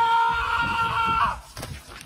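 A person's long, high-pitched scream, held on one steady pitch for about a second and a half, that cuts off sharply; a few faint short sounds follow near the end.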